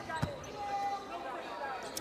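A basketball bouncing once on a hardwood court about a quarter second in: the referee's bounce pass to the free-throw shooter.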